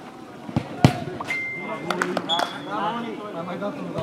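A football kicked twice on artificial turf about a quarter-second apart, around a second in, the second kick sharp and the loudest sound; more knocks of the ball follow around two seconds in.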